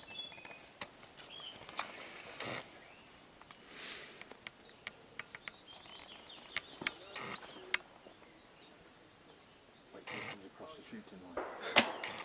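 Quiet woodland with a bird chirping now and then, and scattered rustles and clicks. A single sharp knock comes just before the end.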